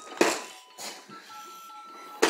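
Electronic tune from a baby's push-along activity walker toy: thin high notes, one held through the second half. Two short breathy hissing bursts come in the first second, the first one louder.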